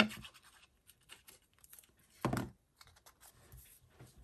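Paper and cardstock being handled and slid on a work surface: faint scattered rustles and scratches, with one brief louder sound a little over two seconds in.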